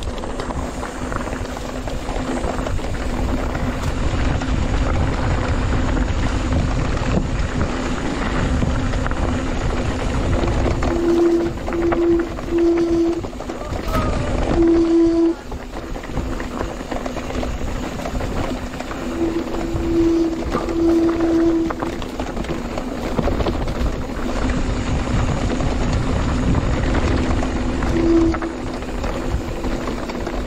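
Mountain bike rolling over a rough dirt trail: a continuous rumble of tyres, rattling and wind noise. A low humming tone comes and goes several times, each lasting a second or two, strongest between about ten and fifteen seconds in and again around twenty seconds.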